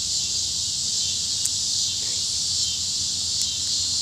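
Steady, unbroken chorus of insects chirring on a grassy lawn at dusk.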